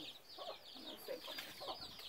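Faint chickens clucking, with a quick run of high, repeated chirps.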